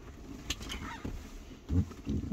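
Faint handling noises from work in an underfloor compartment. There is a sharp click about half a second in and a short, low, rising sound near the end.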